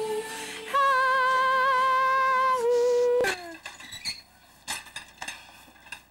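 A woman singing long held notes with a slight waver. The pitch steps up about a second in and drops back down, and the voice breaks off with a falling slide about three seconds in. After that come a few faint clicks.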